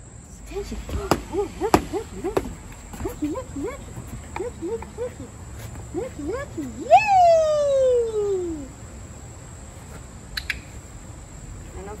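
A woman's wordless high-pitched calls to a puppy that is hard of hearing: a string of short rising squeaky sounds, then one long call sliding down in pitch about seven seconds in. A few sharp clicks are heard early on.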